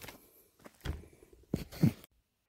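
Footsteps on dry, sandy dirt: a handful of separate steps, with the louder ones in the second second.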